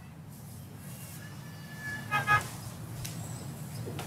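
Steady low hum of outdoor city background noise picked up by an open microphone during a pause in a live link, with a brief faint pitched sound about two seconds in.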